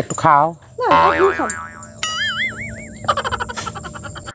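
Cartoon-style comedy sound effects: wobbling, warbling 'boing' tones, followed by a fast run of clicks near the end.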